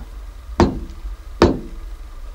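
Two sharp knocks, about 0.8 s apart, struck by hand with a knocker by a sound-effects man as the bounces of a cartoon mouse's ball.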